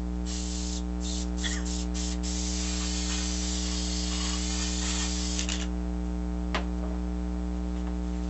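Aerosol can of spray adhesive hissing in a run of short bursts, then one long spray of about three seconds, over a steady mains hum. A single light click follows.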